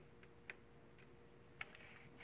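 Near silence: room tone with a faint steady hum and two faint clicks, about half a second in and near the end.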